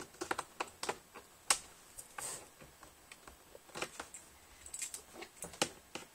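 Laptop keyboard keys clicking in irregular, scattered taps, with a brief rustle about two seconds in.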